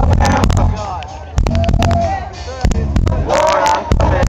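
Live southern rock band playing loud, with singing over bass and drums, the sound overloading the camera's microphone. The singing drops out around a second in and returns near the end.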